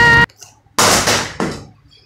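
A held high-pitched yell cuts off suddenly. Less than a second later comes a single loud bang that dies away over about half a second, with a smaller knock after it.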